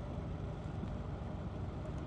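Motorcycle engine and road noise at a steady cruising speed, a low even rumble heard faintly from the rider's own bike.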